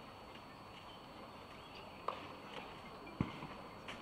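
Quiet outdoor tennis-court background with a few isolated sharp knocks: one about two seconds in and a louder, deeper one just after three seconds.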